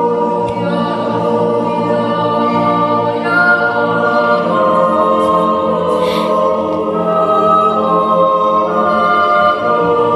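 Mixed yodel choir singing unaccompanied in close harmony, holding long chords that shift every second or so, in a reverberant church.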